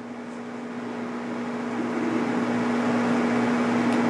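A steady low hum under a hiss that swells gradually and evenly louder.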